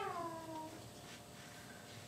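A single high, mewing cry that slides down in pitch over about a second and fades out.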